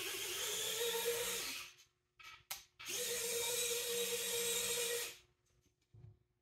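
Servos of a 3D-printed F-35B model's three-bearing swivel nozzle module whining as they swing the thrust-vector nozzle to a new angle after a flight-mode change, in two movements of about two seconds each. A couple of short clicks fall in the pause between the movements.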